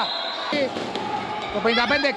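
Basketball game sound on a hardwood court: the ball bouncing over arena noise, with a held high tone in the first half second, an edit cut, and commentary starting again near the end.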